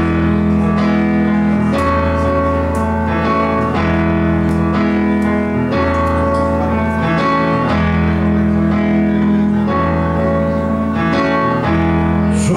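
Instrumental song intro played live by a band: sustained chords over a steady deep bass, changing about every two seconds.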